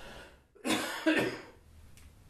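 A man coughing twice in quick succession, the coughs about half a second apart.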